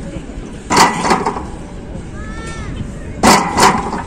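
A set of presses on a plate-loaded outdoor gym machine: two pairs of short, loud bursts about two and a half seconds apart, one pair for each rep, with a short high squeak in between.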